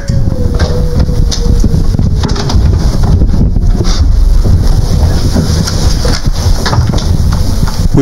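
Microphone handling noise: loud rumbling and knocking as a handheld microphone is moved about, with a faint tone sliding slightly down in the first two seconds.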